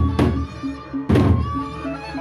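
Lombok gendang beleq ensemble playing: the large barrel drums are struck with sticks, giving two heavy strokes, one just after the start and one about a second in. Cymbals and a steady stepping melody line carry on underneath.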